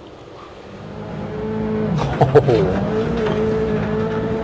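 Rally car engine heard through the onboard camera, fading in after about a second and then running at a steady pitch. A voice cuts in briefly about halfway through.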